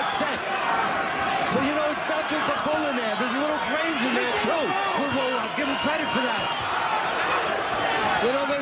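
A man's voice talking over arena crowd noise, with scattered short, sharp impacts throughout.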